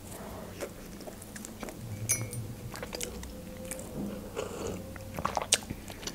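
A person biting into and chewing a soft bread bun close to the microphone: scattered small wet smacks and clicks of the mouth.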